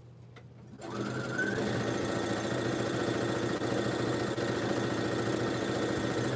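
Electric sewing machine starting up about a second in, its motor whine rising as it gets up to speed, then stitching steadily through a seam.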